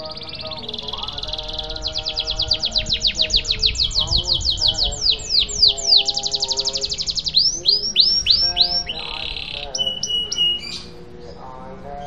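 Domestic canary singing a long rolling song. It starts with buzzy held notes, then a fast trill of rapidly repeated notes, then slower downward-sweeping notes and another trill, and it ends in buzzes and a steady whistle about eleven seconds in.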